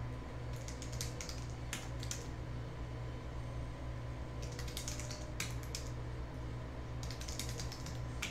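Computer keyboard typing in three bursts of quick key clicks, over a steady low electrical hum.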